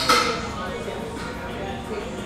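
A single sharp metallic clink right at the start, ringing briefly, then steady room background with faint music.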